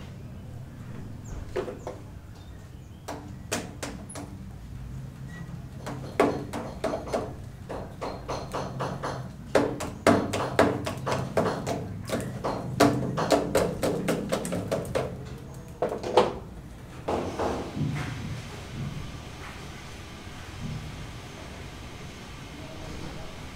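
Irregular knocks and taps, many in quick runs, some with a short ringing tone, over a low steady hum; they thin out after about seventeen seconds.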